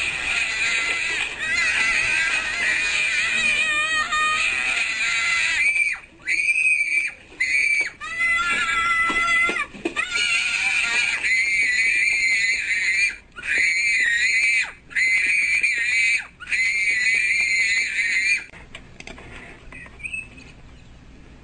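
Shrill, drawn-out screaming and wailing of a tantrum, in long wavering cries broken by short pauses for breath, stopping shortly before the end.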